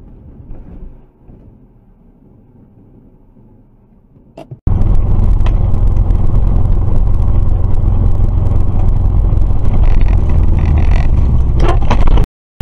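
A car driving, heard from inside through a dash cam's microphone. It is faint and low for the first four and a half seconds, then jumps suddenly to a loud, steady engine and road rumble.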